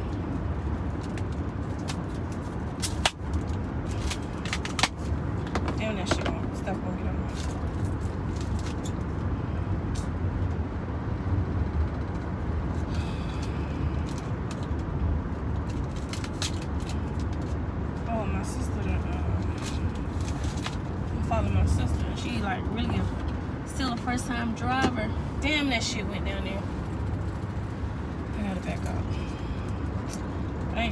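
Steady low road and engine rumble inside a moving car's cabin, with a couple of sharp knocks about three and five seconds in.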